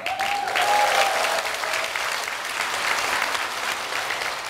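An audience applauding, a dense, steady clapping of many hands in a hall that carries on until speech resumes.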